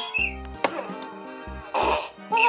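Toy refrigerator's electronic sound effect for its penguin pet using the can toilet: a click, then a short, loud noisy burst near the end, the toy's toilet sound. Background music plays underneath.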